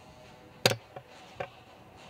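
A sharp click about two-thirds of a second in, then two softer knocks: a sheathed dagger being handled.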